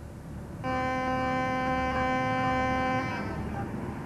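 A klaxon sounding one steady note for about two and a half seconds over a low rumble, signalling the start of work.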